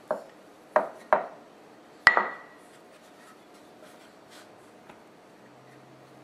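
Wooden rolling pin and pastry board knocking on a tiled counter while craft dough is rolled out: four sharp knocks in the first two seconds, the last one ringing briefly. After that come only faint handling sounds.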